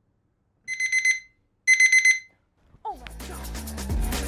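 Digital alarm beeping: two bursts of rapid high beeps about a second apart, as an alarm goes off to wake a sleeper. About three seconds in, a short falling sweep leads into music with a steady beat and bass.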